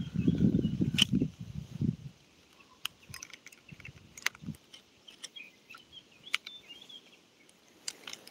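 Rumbling handling and rubbing noise on a phone microphone for about the first two seconds, then scattered small clicks and taps as the phone and fishing rod are handled, with faint bird chirps.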